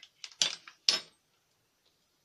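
A few short knocks and clinks of kitchen utensils against a glass mixing bowl, all within the first second.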